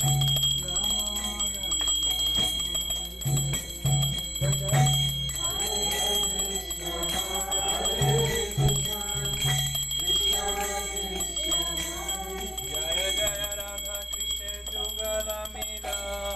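Devotional group chanting with a bell ringing throughout.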